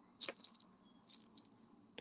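Faint metallic clinking of a heavy chain-link bracelet's links shifting against each other in the hands: a short jingle just after the start, then a couple of softer clicks about a second in.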